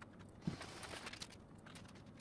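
Quiet desk work: scattered clicks from a computer keyboard and mouse, a soft thump about half a second in, then papers being handled and rustling.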